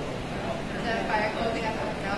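A person speaking from a distance, the words indistinct, over steady low room noise.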